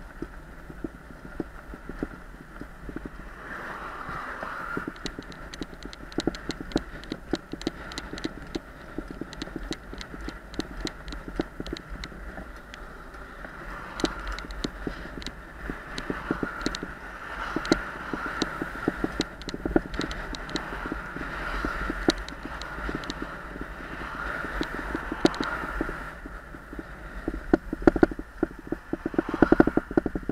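Road and wind noise while riding along a road, with many small rattles and clicks from the ride and cars passing; the clicks get louder and more frequent near the end as traffic closes in.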